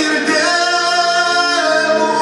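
A man singing a Tatar folk song, holding long notes that step down in pitch partway through, with accordion accompaniment.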